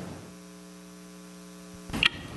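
Steady electrical mains hum on the audio feed: a low, even buzz made of several fixed tones, heard through the pause in speech. A short low thump comes just before the end.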